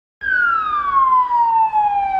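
Ambulance siren sounding one long wail that falls steadily in pitch.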